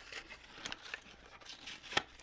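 Paper backing being peeled and torn off a plastic blister pack of mini ink pads, with faint crinkling of the plastic and a sharper click near the end.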